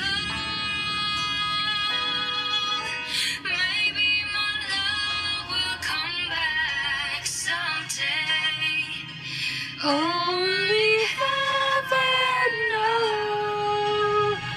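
Female solo vocal singing a slow ballad over a soft accompaniment. The voice slides between notes, and about ten seconds in rises into a long held note.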